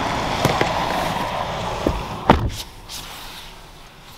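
Rear door of a 2022 Lexus ES 350 being shut from inside with one loud thud a little over two seconds in, after a few light knocks as someone settles onto the back seat. Once the door is closed, the outside background noise falls away to a quiet cabin.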